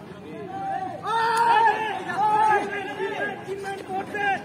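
Several voices talking and calling out over one another, with no single speaker standing out; loudest about a second in.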